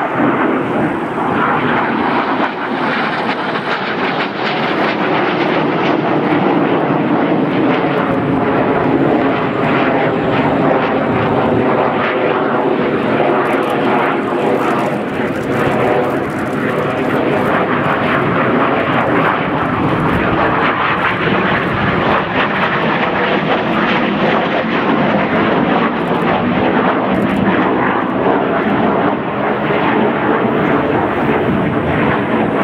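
Yakovlev Yak-130 jet trainer's twin turbofan engines, heard as continuous, loud jet noise from the aircraft flying aerobatic manoeuvres, swelling and easing slightly as it turns.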